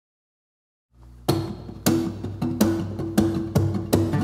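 Acoustic guitar strummed in sharp, percussive strokes, about two a second, ringing chords between them; it starts out of silence about a second in, the opening of the song.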